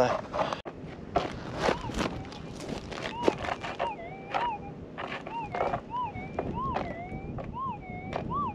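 Minelab GPZ 7000 gold detector's threshold hum, rising into a repeated up-and-down warble each time the coil sweeps over a target, about twice a second from a few seconds in. Scattered clicks come over it. The prospector suspects the signal is a hot rock.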